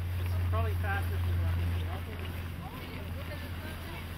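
Background voices of people talking and calling out, over a steady low hum that drops back about halfway through.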